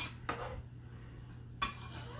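A kitchen knife and cut fruit knocking on a plastic cutting board: a few separate sharp clicks, the loudest about one and a half seconds in.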